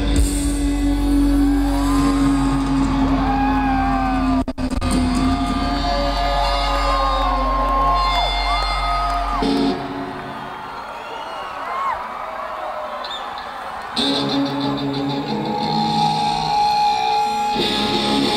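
Live rock band holding a final chord while the crowd whoops, yells and whistles. The band cuts off about halfway through, leaving a few seconds of cheering, then crashes into the next song with loud electric guitars about 14 s in.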